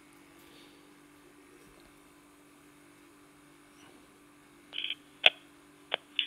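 Faint steady hum from a DMR handheld radio and its hotspot link standing by between transmissions on a talkgroup. Near the end comes a short burst from the radio's speaker, then a single sharp click, as the next station keys up.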